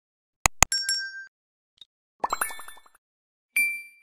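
Animated subscribe-prompt sound effects: two sharp clicks, a few short pings, then a quick run of short rising blips about two seconds in. Near the end a bright ding rings out and fades.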